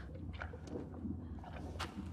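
Quiet cave sound effects: a steady low rumble with a few sharp crunches and clicks of stone, one near the start, one shortly after and a brighter one near the end.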